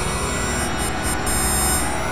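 Dark electronic synthesizer music in a microtonal tuning (12 notes of 91-EDO), played on a virtual CZ synthesizer, an emulation of Casio's phase-distortion CZ synths. It holds dense, sustained tones at a steady level.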